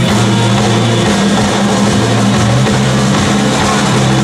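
A live rock band playing loudly, electric guitars over bass and drums, in an instrumental stretch with no singing.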